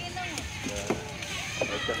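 People talking, with a few short sharp knocks, one standing out just before the middle.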